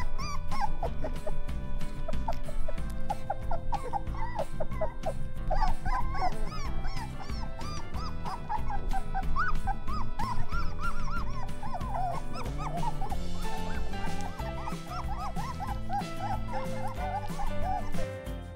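Litter of three-week-old Weimaraner puppies whimpering and squeaking, a run of many short, high, wavering cries, over background music with a steady beat.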